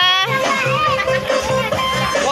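Music with a steady beat, with people talking and children's voices mixed in; a loud rising voice right at the start.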